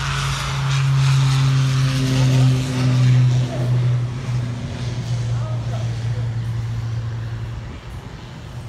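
Turboprop airliner taking off: a steady, loud low propeller drone that swells about a second in, then slowly fades as the plane draws away.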